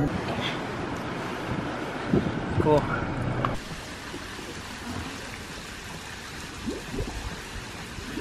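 Restaurant background of voices and table clatter, then, after an abrupt change about three and a half seconds in, a steady rush of running water by a small concrete pool.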